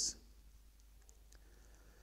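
A man's voice finishes a word right at the start, then near silence with a few faint, short clicks.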